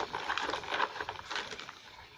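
Battery-powered toy spin art machine spinning its platter with a buzzy, rattling motor-and-gear noise, fading toward the end.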